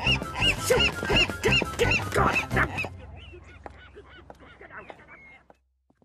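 Cartoon seagull squawking in a quick series of short honking calls, about three a second, over background music; the calls and music fade away after about three seconds and die out to silence just before the end.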